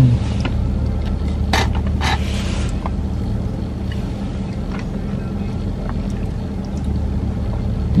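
Steady low hum of a car running, heard from inside the cabin, with two brief sharp noises about one and a half and two seconds in.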